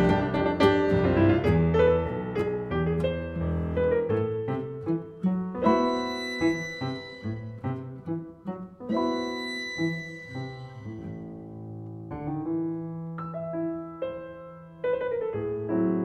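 Instrumental tango for piano and violin: the piano plays struck notes and chords, and the violin holds long notes about six and nine seconds in. The music softens toward the end, then grows louder again just before it closes.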